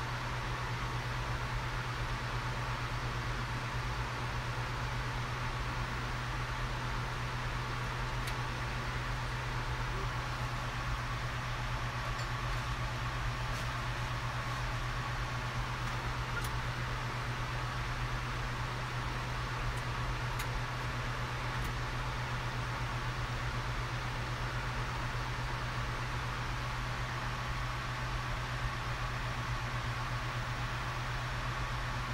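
Steady cockpit noise of a jet in level cruise flight: an even rush with a steady low hum and a faint steady higher tone.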